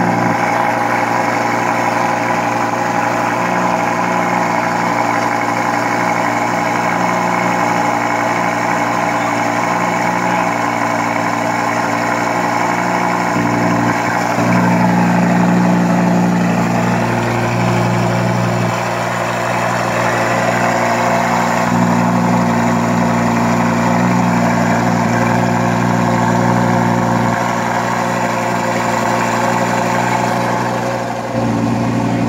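Lamborghini Huracán's 5.2-litre V10 idling through its quad exhaust tips, a steady deep note that shifts a little in tone a few times.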